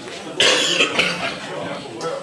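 A person coughing close by: a loud cough about half a second in and a second, shorter one about a second in, over low murmuring voices.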